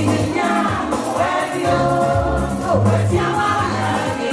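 Many voices singing together over music with a bass line.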